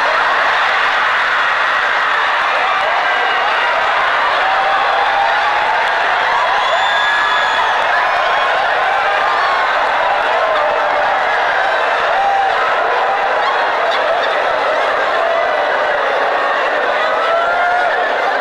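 Large audience laughing hard, many voices overlapping in loud, unbroken laughter.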